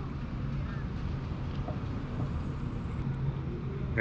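Steady low hum and rumble of outdoor background noise, with no distinct event standing out.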